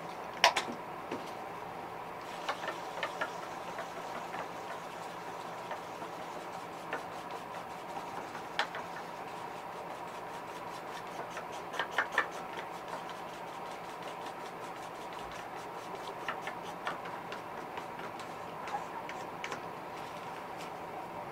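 Small clicks and taps of a paint bottle and a fine brush being handled against a plastic lure and the bench, the loudest about half a second in, with runs of quick light ticks in the middle and near the end. A steady background hum runs under it.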